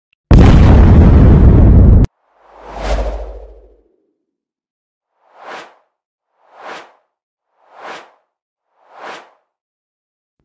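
Intro sound effects for an animated logo: a very loud burst of noise that cuts off suddenly, then a whoosh over a deep boom, then four short whooshes at even intervals.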